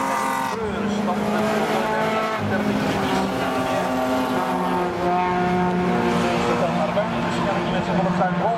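Several rallycross cars' engines racing at high revs, heard together. Their note drops sharply just after the start as they brake and shift for a corner, then rises and holds as they accelerate away.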